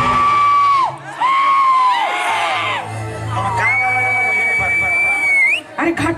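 High, drawn-out vocal whoops shouted into stage microphones through the PA, three in a row, the first two falling away at the end and the last long one flicking upward, over a thinned-out band between song lines.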